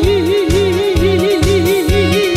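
A woman singing a long held note with a wide, even vibrato into a microphone, over a backing track with a steady beat, both played through the stage PA speakers.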